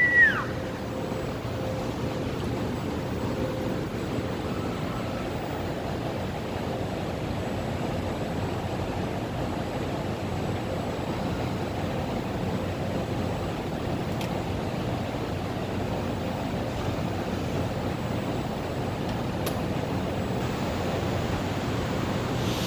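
Steady, even background noise of a large factory warehouse, the constant hum of the building's plant, holding level throughout.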